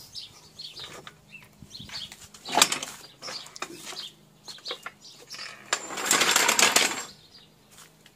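Car jack being lowered with a long wooden handle: scattered clicks and knocks, one sharp knock a few seconds in, and a dense rattle lasting about a second near the end.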